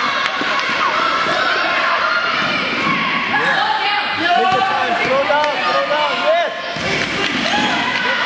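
Spectators and players shouting and cheering indistinctly during a youth basketball game, with a basketball bouncing on the hardwood court now and then.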